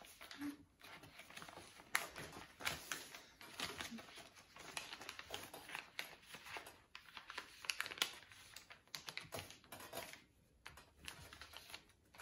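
Sheets of copy paper being folded and creased by hand into paper-airplane wings: faint, irregular rustling and crinkling with short clicks.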